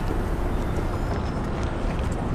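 Car engine idling: a steady low rumble with a faint even hum, over street noise.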